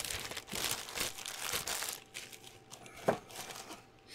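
Thin clear plastic parts bag crinkling as it is handled, most busily over the first two seconds, then quieter rustling with a single light click about three seconds in.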